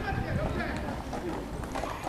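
Players' and spectators' voices calling out across a football pitch, over a steady low rumble of wind on the microphone.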